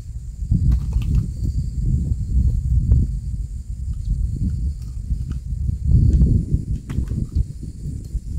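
Wind buffeting an open microphone: a gusty low rumble that swells and eases, loudest about six seconds in, with a few faint clicks.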